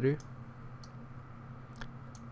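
A few isolated computer mouse clicks, roughly a second apart, over a low steady hum.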